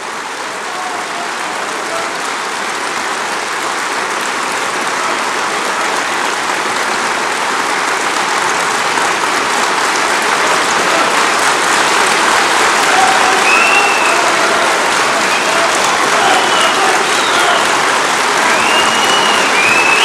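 A large audience applauding, the clapping building gradually louder, with voices calling out over it in the second half.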